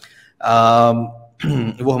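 A man's voice holding one long, steady-pitched hesitation vowel, like "uhh", for about a second, then breaking back into ordinary speech near the end.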